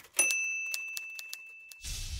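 Logo sting sound effect: a single bright bell ding about a quarter second in that rings out and fades, over a run of sharp clicks like typewriter keys. A whoosh rises near the end.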